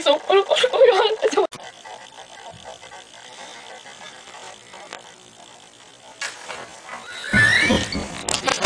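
A boy's voice for the first second and a half, then low room noise; near the end a loud, rough burst with a high squeal sliding through it.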